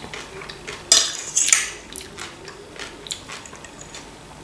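Metal fork clinking and scraping against a ceramic plate while food is scooped up: a sharp clink about a second in, a short scrape right after it, then a few lighter taps.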